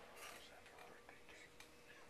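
Near silence in a room, with faint, indistinct murmured voices in the first part and a faint steady hum.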